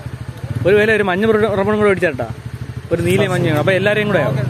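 Two long, drawn-out voice phrases with a wavering pitch, the first about half a second in and the second near the end. Under them runs a steady, evenly pulsing low engine rumble, like an idling motor.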